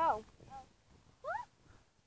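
Three short, high-pitched vocal cries. The first, right at the start, is the loudest; a faint one follows, and the last, past the middle, rises in pitch.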